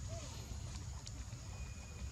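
Outdoor background sound: a low rumble under a steady thin high whine, with one faint short squeak about a quarter second in.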